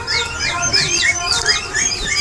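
Many young chicks peeping together: a dense run of short, downward-sliding peeps overlapping at a fast rate.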